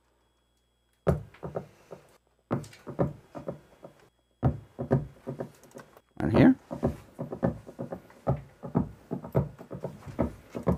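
Short synth notes from an Ableton Live MIDI clip. They start about a second in, pause briefly near the fourth second, then come thicker. A simple bass-register line is being tried out note by note.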